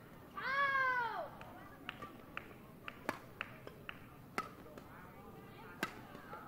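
A short, high-pitched shout, rising then falling in pitch, then badminton rackets striking the shuttlecock in a rally: sharp cracks, the loudest about three seconds in, another near four and a half seconds and one near the end, with lighter clicks between.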